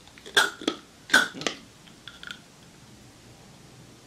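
Two short puffs from a pressurised asthma inhaler, each paired with a sharp gasping breath in, about a second apart, then a few faint clicks.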